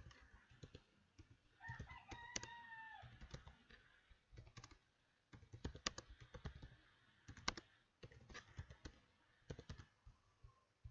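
Faint computer keyboard typing in short runs of keystrokes with pauses between them. About two seconds in, a brief pitched call of about a second, falling at its end, is heard in the background.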